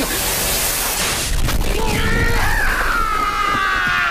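Sound effects of a fiery explosion blast, a dense rushing noise, for the first second and a half. It gives way to a long, high held cry that slowly falls in pitch.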